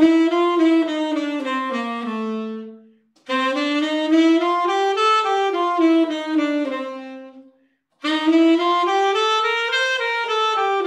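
Tenor saxophone, unaccompanied, playing G7 bebop-scale exercises: quick even runs of notes that climb the scale and then come back down. It plays three phrases, with two short breath pauses, about three seconds in and about seven and a half seconds in.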